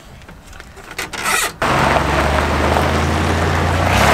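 Pickup truck engine running steadily as the truck drives off over gravel, with tyre crunch. It comes in abruptly about a second and a half in, after a quiet start with a few faint clicks.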